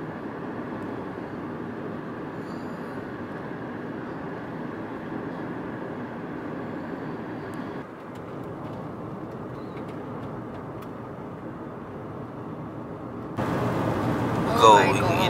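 Steady road and engine rumble heard from inside a moving car's cabin, tyres on the highway. The level dips slightly about eight seconds in.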